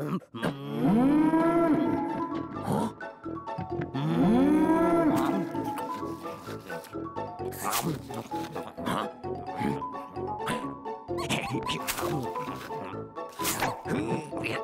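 Two long wordless cartoon-character vocal sounds, each rising in pitch, holding and then falling, a few seconds apart. Background music follows, with a few short knocks.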